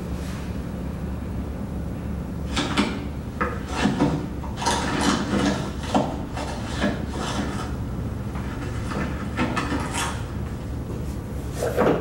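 Film soundtrack played back in a lecture hall: irregular knocks, scrapes and clatters of archive boxes, files and drawers being handled and pulled out, starting a couple of seconds in and again near the end, over a steady low hum.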